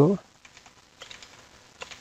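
Computer keyboard typing: light key taps starting about a second in, as a file name is typed in.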